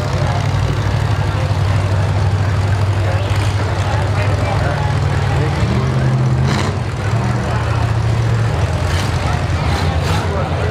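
Demolition derby cars' V8 engines rumbling at low speed, with one revving up about six seconds in before settling back. A couple of brief sharp noises cut in near the end.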